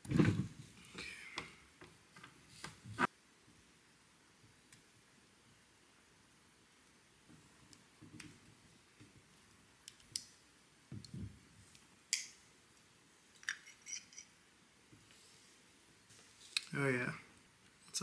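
Light clicks, taps and knocks of small metal carburetor parts and a hose being handled as a Honda EM400 generator carburetor is taken apart by hand. The sounds come in scattered bunches with quiet gaps between, and a short voice sound comes near the end.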